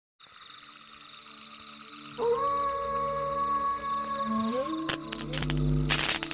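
Electronic intro music for a channel logo: repeated high chirps, joined about two seconds in by a long held synth tone that steps up in pitch, then sharp hits and a rising whoosh near the end.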